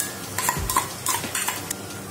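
Steel spoon scraping and clinking against a steel bowl while ginger-garlic paste is scooped out, a run of short scrapes and clicks.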